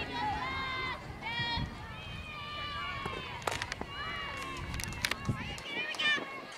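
High-pitched girls' voices chanting and cheering in drawn-out calls at a softball game, with a few sharp cracks about halfway through and again near the end.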